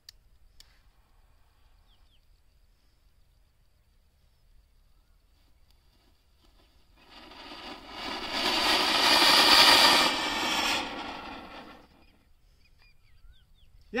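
Ashoka 'simple anar' flowerpot firework fountain hissing as it sprays sparks from the hand. It catches about seven seconds in, swells to a full, loud spray over a couple of seconds, then dies away near the end.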